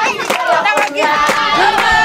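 A group of voices singing together, with rhythmic hand clapping.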